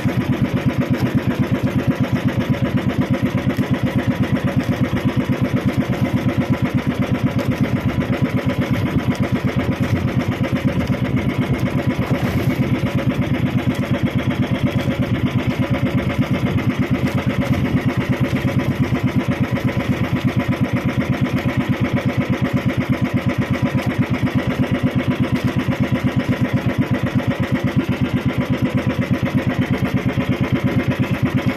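Engine of a motorized bangka (outrigger boat) running steadily under way, with a fast, even putter that does not change.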